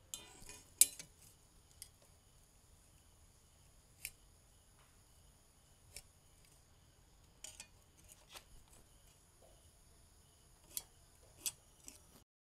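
Scattered light metallic clicks and clinks of a steel rule and metal bar being handled and laid against each other while a cut is marked out, the loudest about a second in, over a faint steady high-pitched whine.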